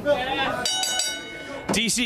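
Wrestling ring bell struck three times in quick succession about half a second in, its ringing hanging on for about a second: the bell starting the match. Voices are heard before and after it.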